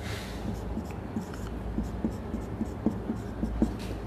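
Marker pen writing on a whiteboard: a run of short, irregular taps and scrapes as the tip forms letters, over a low steady room hum.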